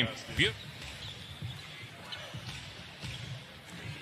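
A basketball being dribbled on a hardwood court, irregular low thuds under the court's ambient sound. There is a short shouted voice about half a second in, and faint voices after it.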